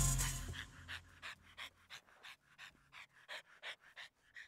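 A dog panting quickly in short, even breaths, about three a second, as the tail of the background music fades out in the first half-second.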